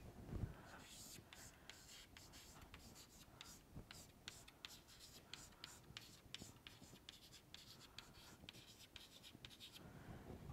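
Near silence: faint room tone with many small, irregular ticks and scratches, like writing or light tapping.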